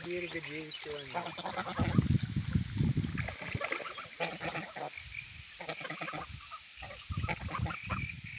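Domestic grey geese calling at close range: short honks and soft gabbling notes in a quick, irregular series.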